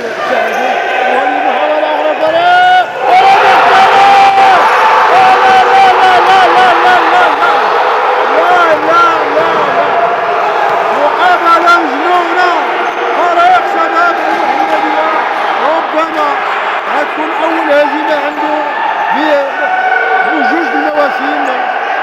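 Futsal being played on a wooden indoor court: the ball striking the floor and feet, and many short shoe squeaks, with loud raised voices over it.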